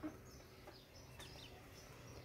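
Near silence outdoors, with a few faint, short bird chirps.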